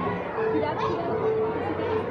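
Crowd chatter: many voices talking over one another, with no single clear speaker.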